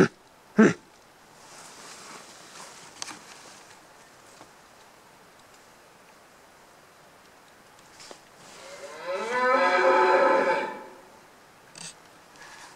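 A wapiti bugle: one call of about two seconds, starting about eight and a half seconds in, rising and then falling in pitch with a string of overtones. Two short, loud sounds come right at the start.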